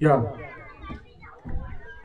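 Speech only: a man says "ya" into a microphone, then fainter voices murmur in the background.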